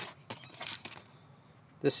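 Brief crinkling and light clicks in the first second as a hand brushes crumpled aluminium foil and picks a small bent-nail pick tool out of a plastic parts tray.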